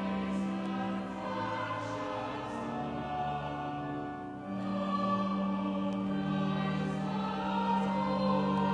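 Choir singing a slow sacred piece, with long held notes that change pitch every few seconds.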